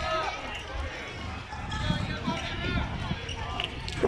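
High children's voices calling and chattering across a playing field, with a few short thuds of soccer balls being kicked.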